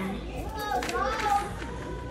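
People's voices in a shop, talking and calling, over a faint steady tone.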